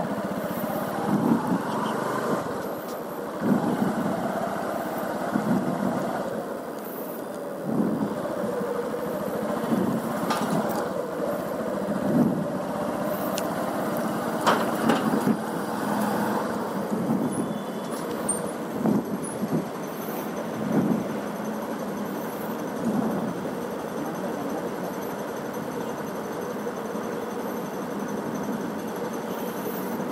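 Motorcycle engine running as the bike rides slowly, its low note swelling and easing every second or two.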